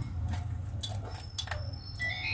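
Faint clicks and taps from a handheld survey data logger being held and handled, over a steady low hum.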